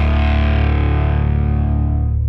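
Rock music with a distorted electric-guitar chord held and ringing out, no drums, its upper tones slowly fading while the low notes sustain.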